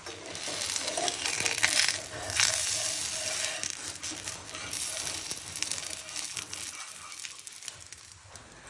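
Dosa cooking on a hot tawa: a crackling sizzle of batter with the scrape and clink of a metal spatula, loudest in the first half.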